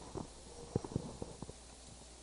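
Handheld microphone handling noise: a series of faint, irregular knocks and rubs as the microphone is lowered and moved about, over a steady low hum.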